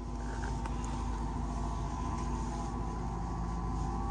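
Steady machine hum over a low rumble, with a few faint ticks.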